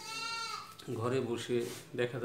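A short, high-pitched animal call lasting about half a second and dipping slightly at its end, followed by a man's voice speaking.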